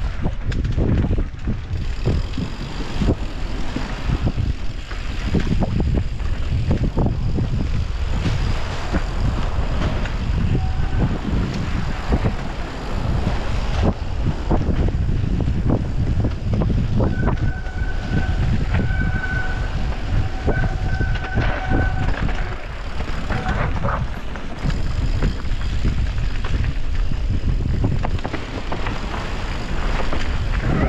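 Mountain bike descending a rough dirt trail: wind rushing over the bike-mounted camera's microphone, with tyre rumble and many knocks and rattles from the bike over roots and bumps. A thin high squeal comes and goes for a few seconds a little past the middle.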